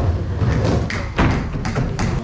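Skateboard wheels rolling over a plywood bowl, a continuous low rumble with knocks from the board on the wood and one sharp knock just over a second in.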